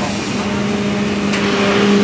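A bus idling with a steady hum, over general street traffic noise.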